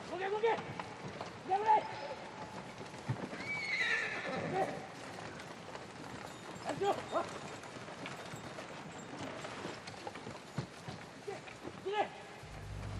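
Horses neighing several times, with hooves clopping and men's voices mixed in.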